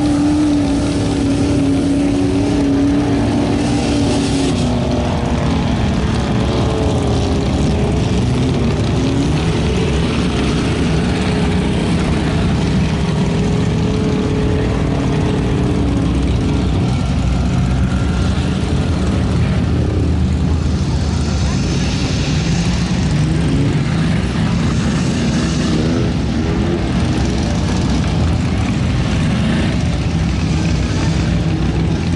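Suzuki Samurai's four-cylinder engine revving up and down under load as it churns through a deep mud hole, with other trucks' engines running.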